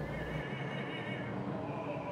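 An operatic singing voice holding one long note with a steady vibrato.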